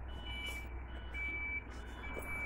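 Several short, high electronic beeps, each about half a second long, sounding over a low steady rumble.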